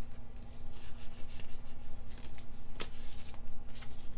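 A stack of Pokémon trading cards being handled, the cards sliding and rubbing against one another in short, repeated swishes. There is one sharper click a little before three seconds in.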